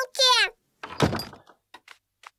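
A short high-pitched cartoon voice, then a wooden door knocking open about a second in, followed by a run of light taps.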